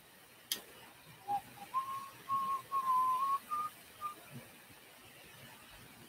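A person whistling a short tune of about six notes, starting low and stepping up in pitch over some three seconds. A single sharp click comes just before it.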